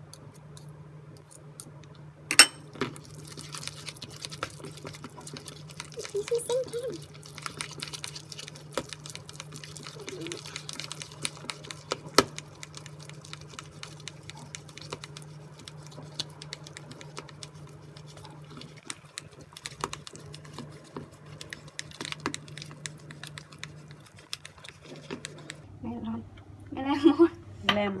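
Wire balloon whisk beating a thick egg-yolk and flour sponge-cake batter by hand in a plastic bowl: fast, irregular clicking and tapping of the wires against the bowl, with a couple of sharper knocks, about two seconds in and again near twelve seconds. A steady low hum runs underneath.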